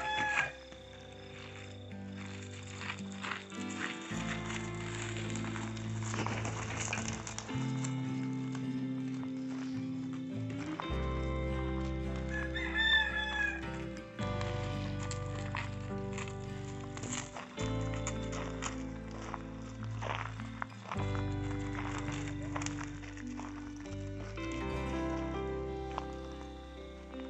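Background music of slow, held chords that change every few seconds. A rooster crows twice over it: once right at the start and once, louder, about halfway through.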